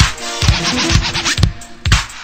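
Instrumental stretch of an 1980s Italo-disco dance track: electronic music with a steady kick drum about twice a second under sustained synth lines.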